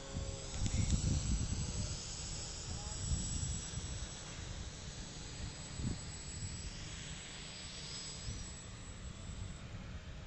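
A radio-controlled tow plane's engine drones faintly high overhead, its pitch wavering as it flies. Wind rumbles on the microphone, heaviest in the first couple of seconds.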